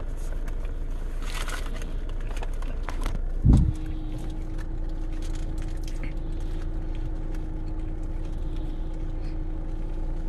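Crisp hard taco shell crackling as it is bitten and chewed, a few scattered crunches over the steady low hum of a car interior. About three and a half seconds in there is a single loud low thump, after which a steady hum tone holds.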